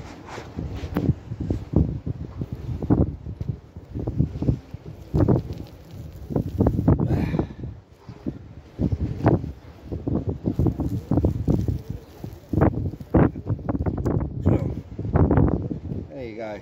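Irregular bursts of rustling and handling noise, with wind buffeting the microphone.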